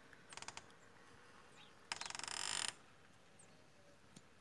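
A short, faint rattle of rapid clicks near the start, then a louder rattling run of fast, evenly spaced clicks lasting under a second, about halfway through.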